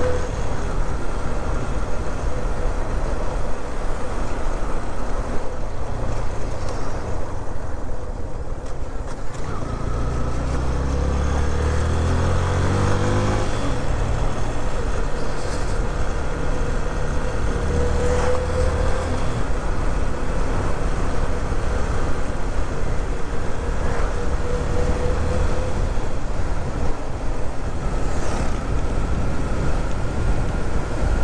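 Motorcycle engine running under way, recorded from the rider's position with wind rushing over the microphone. Around the middle the engine pitch rises steeply as the bike accelerates, then settles back to a steady cruise.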